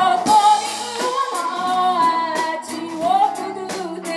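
Live band playing: a woman singing long held notes with vibrato, backed by drums with cymbal hits, electric bass, electric guitar and keyboard.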